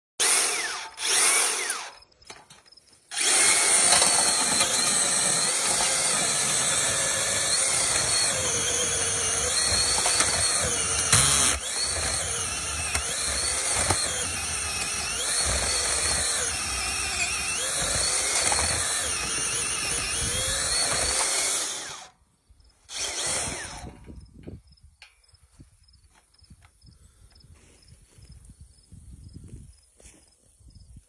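Makita cordless earth auger boring into soil: two short bursts of the motor, a pause, then a steady run of nearly twenty seconds as the spiral bit digs the hole, and one more short burst after it stops.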